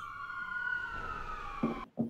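Police siren wailing outside, one slow rise and fall in pitch. A short low sound comes just before the end, then the sound cuts off abruptly.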